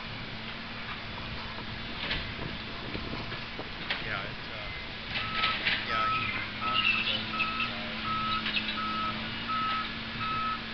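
Heavy logging machinery with a steady engine drone; about five seconds in, a backup alarm starts beeping at an even pace, roughly three beeps every two seconds.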